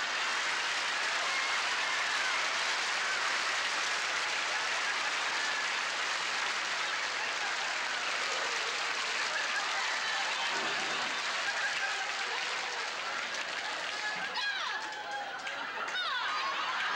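Studio audience laughing and applauding steadily for a long stretch.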